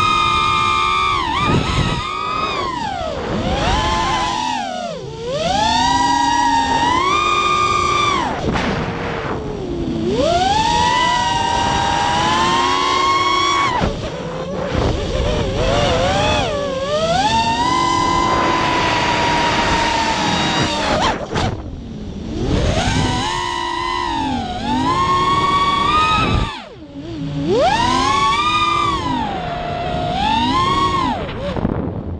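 FPV racing quadcopter's four brushless motors and propellers whining, close up from an onboard camera. The pitch swoops up and down with the throttle, dropping away briefly several times as the throttle is cut and then climbing again.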